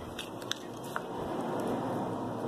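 Hands working store-bought slime out of its plastic tub: a few light clicks, then a steady rustling handling noise that grows slightly louder after about a second.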